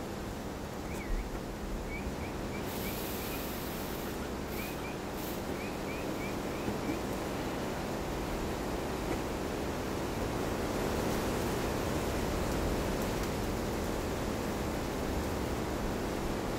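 Forest ambience: a steady rushing background noise, with a few runs of short, faint, high chirps in the first half.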